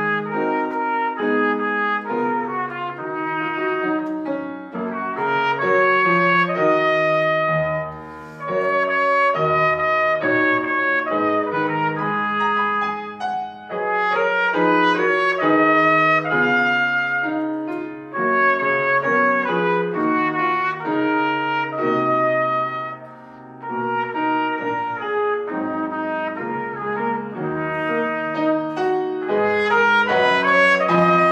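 Trumpet playing a melody with grand piano accompaniment, a Feurich grand. The trumpet's phrases are separated by brief breaks for breath, about every four to five seconds.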